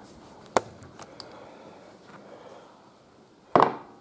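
Plastic clicks and handling rustle as the top air-filter cover of a Perla Barb 62cc chainsaw is unlatched and lifted off, with a sharp click about half a second in and a louder knock near the end.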